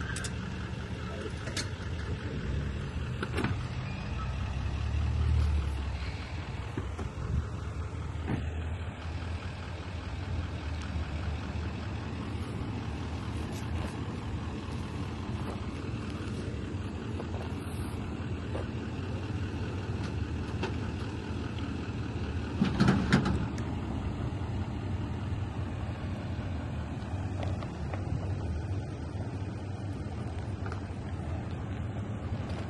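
Diesel truck engine running with a steady low rumble, swelling briefly about five seconds in, with a short louder burst about 23 seconds in.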